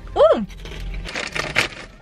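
A short 'Ooh!', then crisp crackling and crunching: a foil chip bag being rummaged through while crunchy kettle-cooked chips are chewed.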